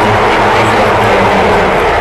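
Large arena crowd cheering, a loud steady roar, with a low hum underneath that fades out about a second and a half in.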